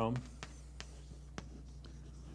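Chalk tapping on a chalkboard as it writes: four short, sharp taps spread over the pause, over a steady low electrical hum.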